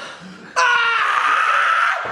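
A person's high-pitched vocal squeal, about a second and a half long, starting about half a second in.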